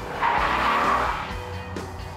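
Car tyres squealing for about a second as a muscle car takes a corner, over background music.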